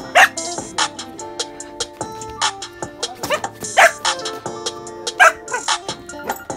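A dog barking several times over background music, the loudest barks shortly after the start, in the middle, and about five seconds in.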